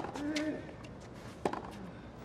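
Tennis ball struck by rackets in a hard-court rally: a sharp pop at the start, followed by a brief grunt from the hitter, then a fainter pop about a second and a half later as the ball is returned.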